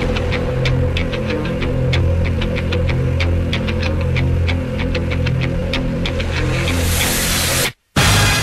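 Music with a steady, quick ticking beat over a sustained low drone. It cuts out abruptly to silence for a moment just before the end.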